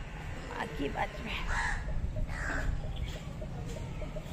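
A bird calling in short calls, two or three times, over a steady low rumble.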